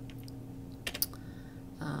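A few quick clicks of a laptop key about a second in, pressed to advance a presentation slide, over a steady low room hum.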